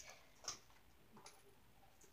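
Near silence, with one faint click about half a second in and a few softer ticks a little after a second.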